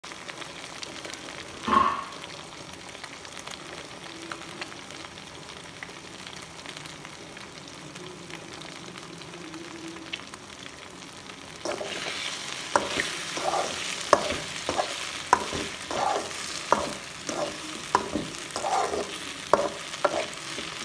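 Egg frying with cubes of idli in a pan, a steady sizzle. About halfway through, a spatula starts stirring and scrambling the egg into the idli, scraping and knocking against the pan about once or twice a second.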